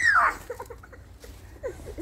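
A young girl's short, high squeal, falling in pitch, then a few faint soft vocal sounds.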